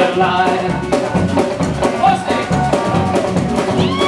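Live rockabilly band playing an instrumental stretch: upright bass, electric guitar and drum kit driving a steady beat.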